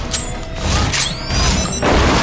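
Metallic clicking and scraping as the ring pin is pulled from a smoke grenade, then a rising high whistle and a loud sudden burst near the end as it goes off.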